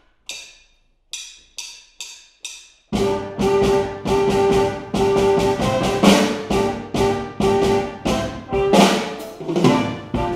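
A count-in of six sharp clicks, two slow then four quick, then about three seconds in a band with horns and drums comes in together playing an upbeat tropical dance number with a steady beat.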